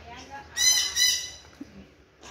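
A bird giving two short, high-pitched calls about half a second apart, over faint background voices.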